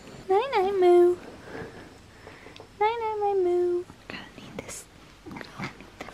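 Pomeranian puppy whining twice, each whine just under a second long, about two seconds apart; each rises, dips and then holds a steady pitch.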